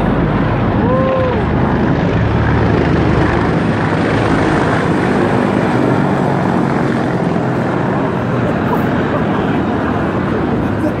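Large US Marine Corps helicopter flying low overhead, its rotors and engines loud for the first four seconds or so, then the deep rotor sound easing as it moves away.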